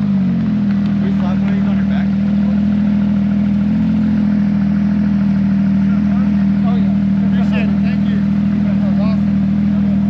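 Porsche 911 GT3 RS flat-six engine running steadily close by, holding one even pitch. Faint voices come through behind it late on.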